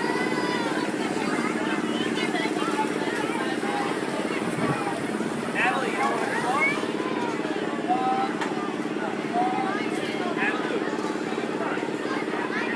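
Steady mechanical drone from a running amusement ride, with many people's voices and children's chatter over it.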